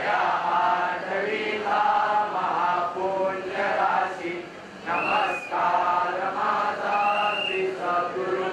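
A group of worshippers singing a Hindu aarti hymn together as a rhythmic chant. Two brief high tones sound over the singing about five and seven seconds in.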